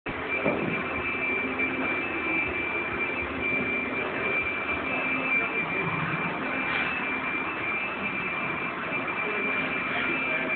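Steady machine-like hum and hiss of room ambience with a constant thin high whine.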